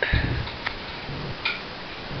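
A few sharp computer-mouse clicks, after a low thump at the start.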